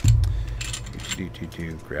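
A dull thump as a part of the M1A rifle's action slips out of place, then light metallic clicks and rattles of the steel receiver, bolt and operating rod being handled.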